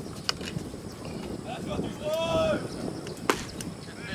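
Distant voices calling out, with one drawn-out shout about two seconds in. A single sharp knock comes a little after three seconds.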